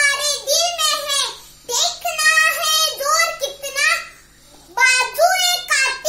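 Speech only: a young girl speaking in phrases, with a short pause about four seconds in.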